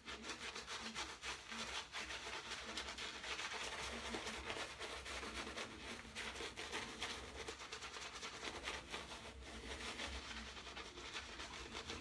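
Two-band badger-hair shaving brush scrubbing thick shaving lather into stubble on the face: a continuous run of fast, scratchy bristle strokes.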